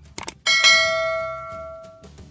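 Two quick clicks, then a bright bell ding that rings and fades over about a second and a half. It is the sound effect of a subscribe-button animation whose notification bell is clicked.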